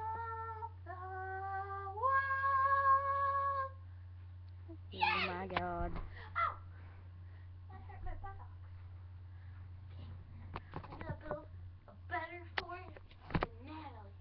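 A girl singing on her own, holding long notes that step up in pitch over the first few seconds, then a loud sliding note about five seconds in, followed by short scattered vocal sounds.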